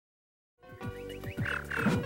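About half a second of silence, then busy electronic video game music with quick falling blips and swooping sound effects starts up.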